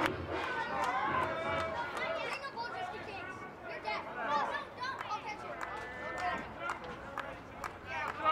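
Quiet, indistinct voices talking and calling out, with the open background hum of a ballpark field.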